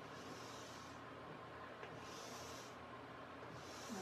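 Chalk scratching on a chalkboard in three strokes of about half a second each as a large letter N is drawn, faint over the steady hum of a small fan.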